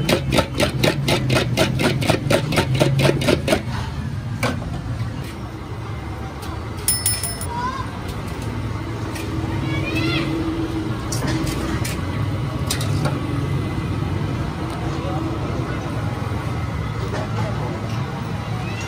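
A brass ladle churning crushed ice and milk in a brass pot, a rapid even clatter of about six strokes a second that stops about three and a half seconds in. After that come scattered metal clinks and one ringing clink about seven seconds in, over a steady low hum.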